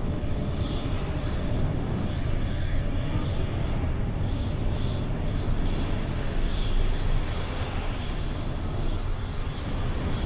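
Steady low rumbling drone of a spaceship engine sound effect, even and unbroken.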